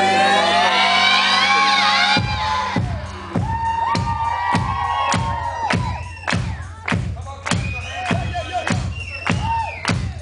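Live rock band: a held chord with several voices singing cuts off about two seconds in, and a steady drum beat of about two hits a second with bass takes over. Shouts and cheers come in over the beat.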